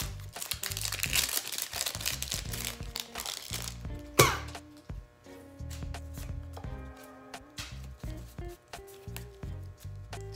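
Foil booster-pack wrapper crinkling as it is torn open and the cards are pulled out, with one sharp snap about four seconds in; after that, small clicks of cards being flicked through. Soft background music with held notes plays underneath.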